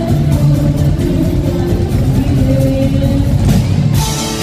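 Live band playing loud rock music, with electric guitars and a drum kit, heard through a bar's PA.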